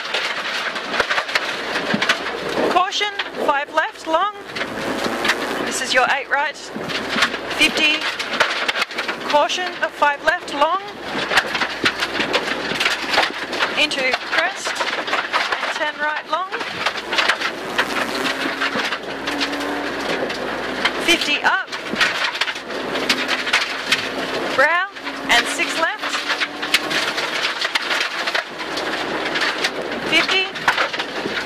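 Rally car engine heard from inside the cabin at full stage pace, its revs rising and dropping repeatedly with the gear changes, and gravel and stones rattling on the underbody. In the second half the engine holds a steadier note for several seconds.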